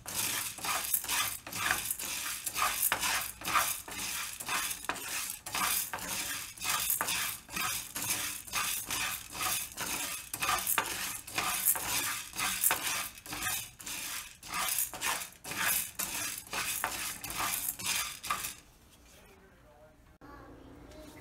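A wooden spatula stirring small white lentils around a textured nonstick frying pan. It makes quick scraping strokes, about two a second, that stop about a second and a half before the end.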